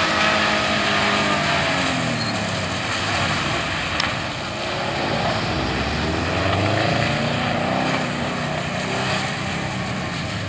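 Subaru Impreza WRX turbocharged flat-four engine revving up and down as the car slides sideways on a wet skidpan, over a constant hiss of tyres and water spray. A single sharp click comes about four seconds in.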